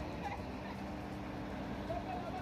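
Caterpillar excavator's diesel engine idling with a steady low hum.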